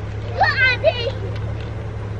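Two short, high-pitched children's shouts in quick succession about half a second in, over a steady low hum.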